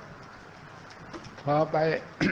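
A steady low hiss in a pause between words, then a man's voice speaking two short, flat-pitched syllables near the end.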